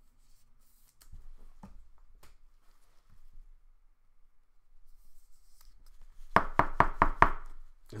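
Faint plastic rustles and clicks as a trading card is slid into a penny sleeve and rigid plastic toploader, then about six quick, sharp knocks in about a second near the end: the toploader being tapped on the tabletop to seat the card.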